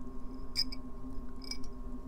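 Two faint clicks, about a second apart, of small metal pliers touching metal craft charms in a small bowl, over a steady low hum.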